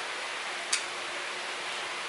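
Steady background hiss, with a single short click a little under a second in.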